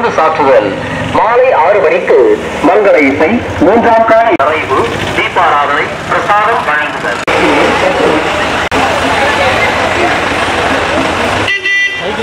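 A voice over a horn loudspeaker on a mini truck, with road vehicle noise. From about seven seconds in, a steadier noisy din takes over without a clear voice.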